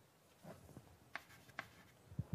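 Chalk writing faintly on a blackboard: light scraping strokes, then two short taps in the second half.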